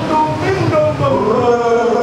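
A man singing loudly into a microphone with many voices of a congregation singing along, the notes held and gliding.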